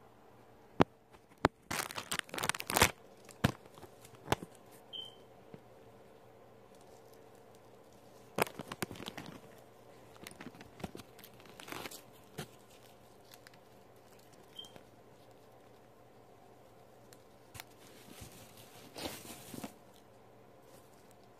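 Hands handling hair bundles and their packaging: on-and-off bursts of rustling and crinkling with a few sharp clicks. The loudest burst comes about two seconds in, with more around eight to twelve seconds and near the end.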